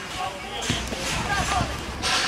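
Voices of young footballers calling out on the pitch, with a couple of dull thuds, like a football being struck or bounced, a little under a second in.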